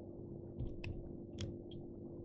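Faint handling noise from fingers winding pheasant-tail fibres onto a jig hook in a fly-tying vise: a few small, sharp clicks, the clearest a little under a second in and near the middle, over a steady low hum.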